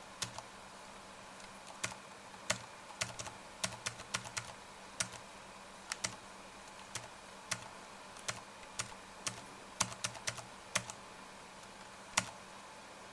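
Irregular single clicks of computer keyboard keys being pressed, about two a second, some in quick pairs, while a web page is paged through, over a faint steady hum.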